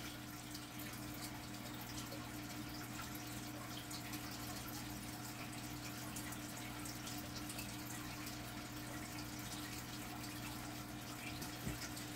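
Fish tank running: a steady trickle of water with a low, even hum from its filter or pump.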